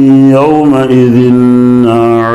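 A man chanting Quranic recitation aloud in a slow melodic style, holding long drawn-out vowels on a steady pitch with small bends, amplified through a microphone.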